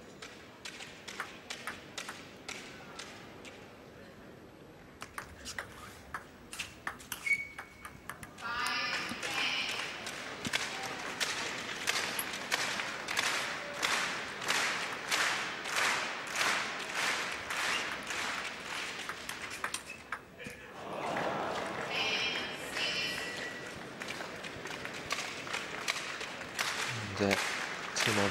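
Celluloid table tennis ball clicking off bats and table: sparse pings at first, then a dense run of hits, over the murmur of a crowd in a large hall, with brief shouts.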